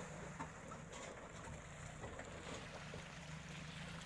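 Mitsubishi pickup truck's engine running faintly: a low steady hum with light road noise and a few faint clicks.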